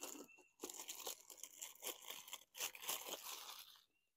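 Clear plastic wrap crinkling and crackling in irregular bursts as hands handle it and pull it from a new aluminium camp kettle.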